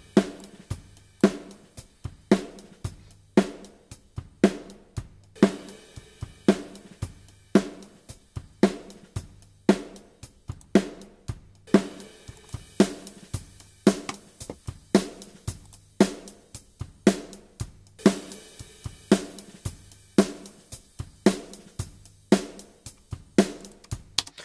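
Recorded drum kit played back, a steady beat with sharp snare hits about twice a second over cymbals and kick, breaking off briefly twice. The drums are being auditioned in a mix to hear how a digital high-frequency boost and saturation treat the snare transients.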